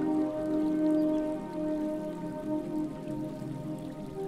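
Soft ambient music of long held tones over the steady trickle of a small stream.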